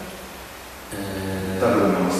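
A man's voice after a short lull, holding a long, level-pitched hesitation sound like a drawn-out "euh" about a second in, just before speech resumes.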